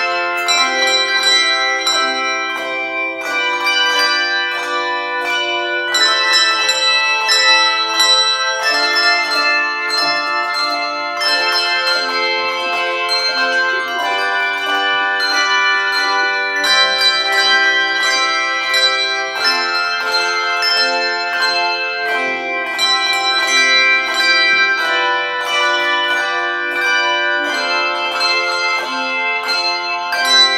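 Handbell choir ringing a three-octave set of handbells: a run of struck bell notes and chords that keeps changing about every second, each tone ringing on into the next.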